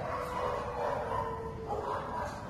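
A dog whining in long, drawn-out tones that shift slightly in pitch.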